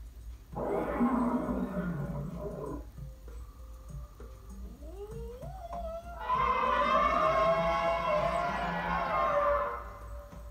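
Cartoon animal calls for a lion puppet and an elephant puppet: a short rough roar starting about half a second in, then a few rising glides, then a longer, louder trumpet-like call from about six seconds in, dropping away just before the end.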